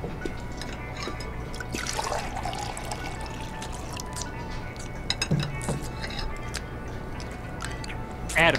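Restaurant foley: scattered light clinks of glassware and dishes, with liquid pouring for about a second around two seconds in, under quiet background music.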